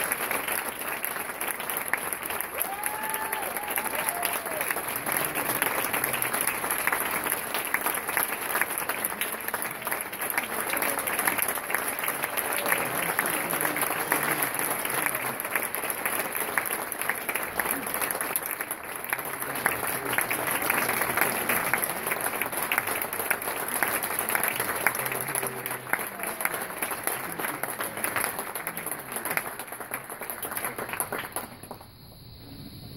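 Audience applauding steadily, dense clapping with a few voices and brief calls from the crowd.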